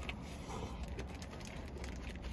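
Biting into and chewing a Whopper burger: faint soft clicks and wet crackles of chewing over a low steady hum.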